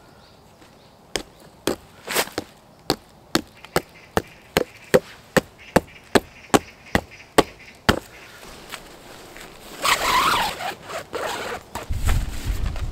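A rock hammering a metal tent stake into hard ground: about sixteen sharp strikes, two to three a second, that stop about two-thirds of the way through. A burst of rustling follows near the end.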